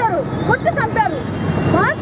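A woman speaking forcefully, in Telugu, into reporters' microphones, over a steady low hum of street and crowd noise.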